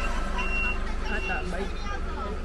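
A large tour bus's engine running as it drives off on a wet road, with a high-pitched warning beeper sounding about once every three-quarters of a second.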